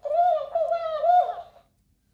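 Plush dancing cactus toy playing back a spoken phrase in a squeaky, high-pitched copy of a woman's voice, for about a second and a half before it stops.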